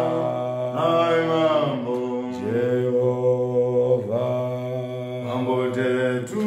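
Two men singing a Shona gospel song a cappella in harmony. A low voice holds long notes beneath a slowly gliding melody.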